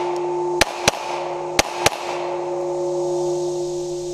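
Two double taps from a Glock 30 .45 ACP pistol, the shots of each pair about a quarter second apart, with the second pair about a second after the first. The steel IPSC target rings on a steady metallic tone between and after the shots, struck afresh by the hits.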